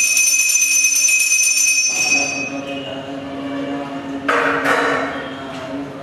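A metal bell struck once, ringing with a bright, clear tone that fades over about two and a half seconds. About four seconds in comes a brief metallic clatter.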